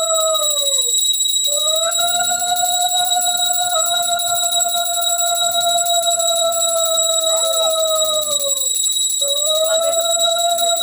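A conch shell blown in long held notes, each sagging in pitch as the breath runs out, with a short break for breath about a second in and again near the end. Over it, a metal hand bell rings fast and continuously.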